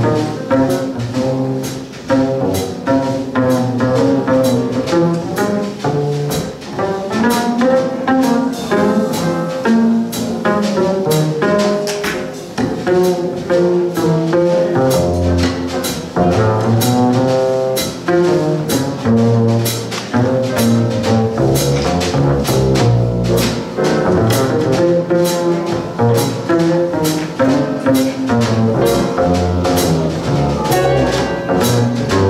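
Live jazz piano trio playing a slow tune: upright string bass to the fore, with piano and drums keeping time in steady cymbal strokes.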